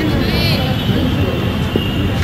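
Live outdoor ambience at a cricket ground: a steady low rumbling noise, with a player's brief high-pitched shout about half a second in.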